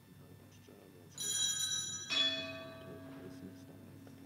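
Altar bell (Sanctus bell) rung by a server during the silent Canon of the Mass. It starts about a second in with a ringing of several high tones, and a second stroke a second later adds lower tones that fade slowly.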